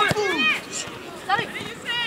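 Shouted speech: voices calling "Allez" to urge on the players, in a burst at the start and again from just past halfway.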